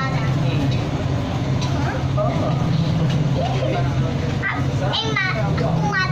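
Steady low hum of a light-rail train in motion, heard from inside the cabin. Children's voices chatter over it, with a high voice near the end.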